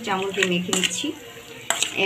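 Hands and a metal spoon mixing meat with spice pastes and oil in a steel bowl: wet stirring and squelching, with a few sharp clinks against the bowl near the end. A woman's voice is heard briefly in the first second.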